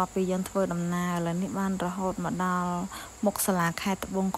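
A single voice singing or chanting, with short broken phrases and a couple of long held, level notes, over a faint, steady high-pitched insect buzz.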